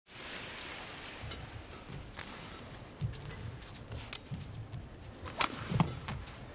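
Badminton rally: rackets strike the shuttlecock with sharp pops about once a second, and the players' shoes thud on the court between shots. The hits get louder near the end as the rally speeds up.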